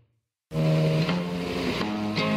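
Silence for about half a second between tracks, then guitar music starts suddenly with a ringing chord and low bass notes.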